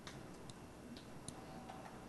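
A few faint, short clicks about half a second apart over quiet room noise.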